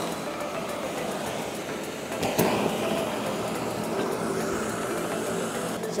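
A green and gray 1.5 hp inflatable (bounce-house) blower runs steadily, blowing air through a launch tube. About two seconds in there is a sudden short pop as a ball is blasted out of the tube.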